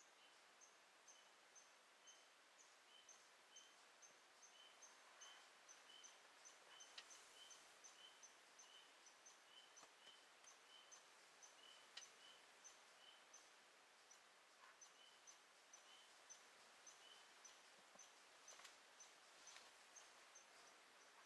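Near silence in the woods, with a faint high chirp repeated steadily about twice a second and a few faint sharp clicks.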